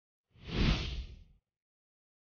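A whoosh sound effect about a second long, swelling and then fading, with a deep rumble under a hissy top: a transition cue cutting out of a daydream.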